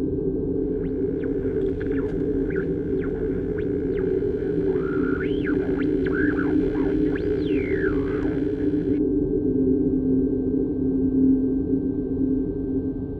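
Ambient horror film score: a steady low synthesized drone, with high tones gliding up and down over it until they cut off suddenly about three-quarters of the way through.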